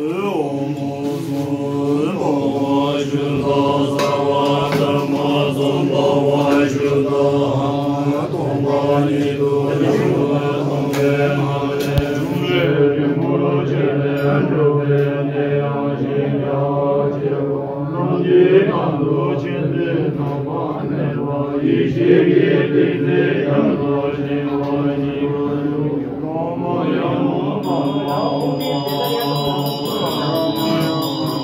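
Men's voices chanting Buddhist prayers together on a steady low drone. Hand bells start ringing near the end.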